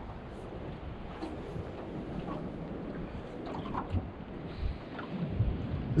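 Wind buffeting the microphone: a steady low rumble and hiss, with a few faint clicks.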